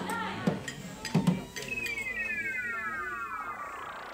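An old tube television switched on: a couple of sharp clicks from its switch, then a falling electronic tone sweep of several tones sliding down together over about two seconds, with a rising whoosh near the end.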